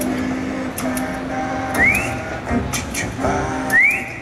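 Live jazz band playing, with guitar and drums over held notes. Two quick rising slides in pitch come about two seconds in and again near the end.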